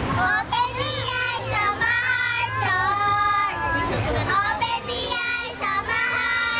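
Several young girls singing an action song together in high children's voices, with some notes drawn out in the middle.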